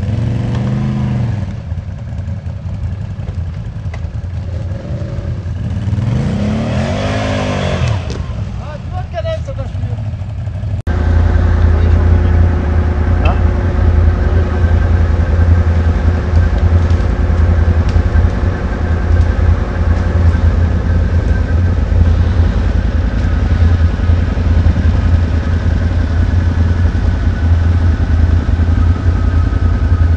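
Quad bike (ATV) engine revving up and down as it works through deep mud. About eleven seconds in, the sound cuts to a quad engine running steadily close by, likely idling.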